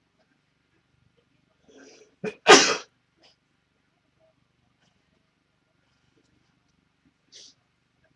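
A person sneezes once, loudly, about two and a half seconds in: a quick breath in, then a sharp explosive burst. A faint short hiss near the end.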